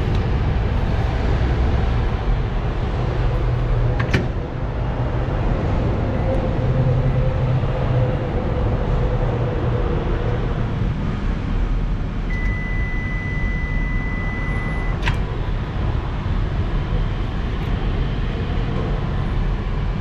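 Commercial microwave oven running with a steady hum over a low rumble of street traffic. A sharp click comes about four seconds in, a single long high beep sounds past the middle, and another click follows right after it.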